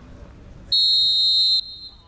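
Referee's whistle blown once, a single steady high blast just under a second long that starts abruptly and cuts off, the signal that the penalty kick may be taken.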